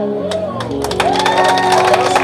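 A live band's final chord on keyboard and guitar held and ringing out, as audience clapping and cheering begin about a third of a second in.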